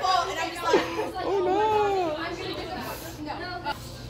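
Young people's voices chattering in a large hall, with one drawn-out vocal sound a little over a second in.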